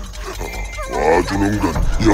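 A cartoon monster's voiced growl, its pitch wavering, starting about half a second in and growing louder about a second in.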